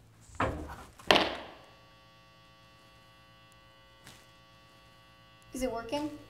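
Two thuds, about half a second apart, the second louder and ringing briefly. They are followed by a faint, steady electrical mains hum made of many tones.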